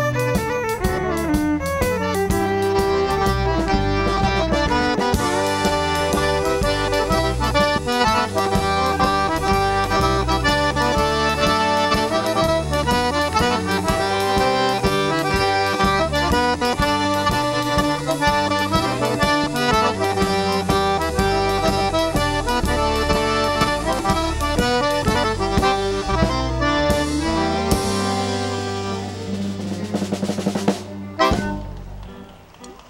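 A live Cajun band plays a dance tune, with the diatonic accordion carrying the lead over fiddle, steel guitar, electric bass and a drum kit. The tune winds down near the end.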